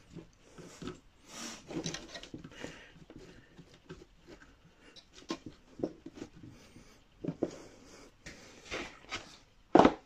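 Hand scooping, spreading and pressing loose coco-fibre substrate inside a glass terrarium: irregular rustling and scraping, with a louder, sharper knock just before the end.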